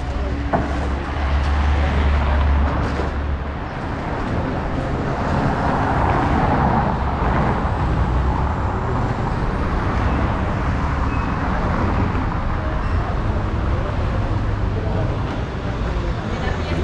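Riding noise from a Zero 10X electric scooter moving over pavement: wind buffeting the microphone, with tyre and road rumble.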